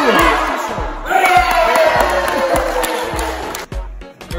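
Background music with a steady bass beat, under a crowd of young people shouting and cheering; it cuts off abruptly near the end.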